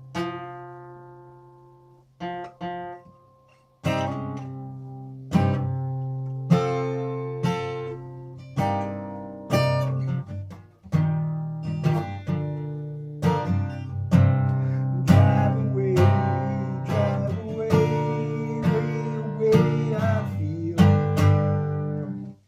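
Steel-string acoustic guitar being strummed in a loose improvised chord pattern. A chord rings and fades at the start, and there is a short lull before steady strumming resumes about four seconds in and grows busier towards the end. It is picked up by a camera phone's built-in microphone.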